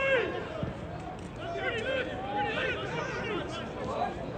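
Voices calling and shouting at a football match, heard from the touchline, with a loud shout right at the start and further calls through the middle over a general hubbub.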